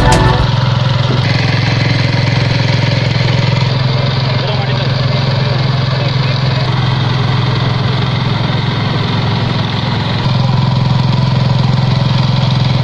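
Small engine of a walk-behind power inter-cultivator (power weeder) running steadily as the machine tills soil, a little louder near the end.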